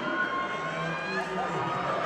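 A man speaking through a microphone and PA system, with crowd noise behind.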